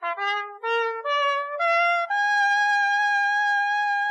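Background music: a brass melody, most like a trumpet, playing a run of short notes that climb in pitch and settling about halfway through into one long held note.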